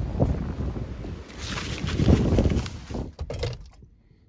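Strong wind buffeting the microphone outdoors, a gusting low rumble that rises and falls. A few sharp clicks come just before the sound cuts off suddenly near the end.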